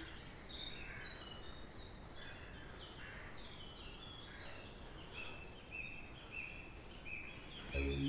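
Faint outdoor ambience of birds chirping: a series of short high notes repeating every half second or so over a soft background hiss. Music comes in right at the end.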